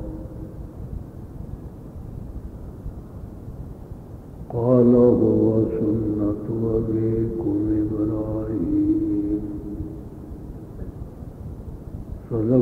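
A man chanting Arabic recitation in a slow melodic style. After about four seconds of pause with only background hiss, he sings one long phrase with drawn-out held notes that fades out around ten seconds in.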